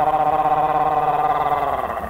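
A man's voice holding one long vowel on a steady pitch with a slight waver, trailing off near the end: a sustained vocal cry by the dalang of a Sundanese wayang golek play.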